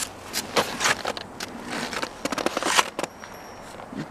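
Snowshoes with metal crampon teeth crunching and clicking in snow, a run of irregular short crunches close to the microphone.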